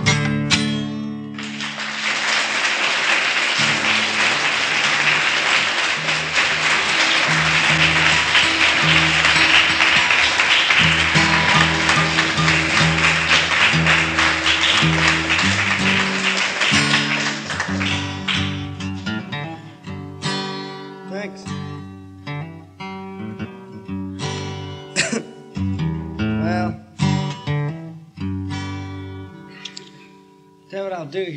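Acoustic guitar picking, with audience applause over it from about two seconds in that fades away by halfway. Then single plucked strings ring out one at a time, some sliding in pitch, as the guitar is retuned to an open tuning.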